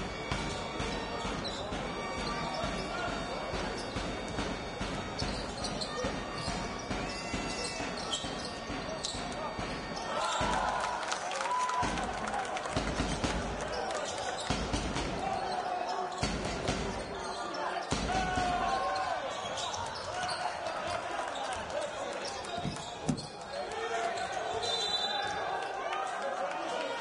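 Live basketball game in an indoor arena: a ball being dribbled on the hardwood court, with crowd noise and voices. From about ten seconds in, deep thuds come every second or two.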